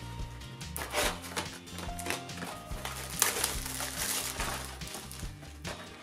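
Background music with held low notes, over faint clicks and rustling from a cardboard booster box being handled.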